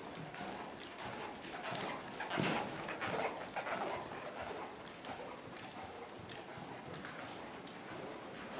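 Hoofbeats of a horse moving over the arena's dirt footing, thickest about two to three and a half seconds in. A faint high chirp repeats evenly about twice a second throughout.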